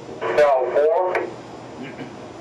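Speech: a short spoken phrase from a higher-pitched voice than the narrator's, lasting about a second, followed by a low steady background.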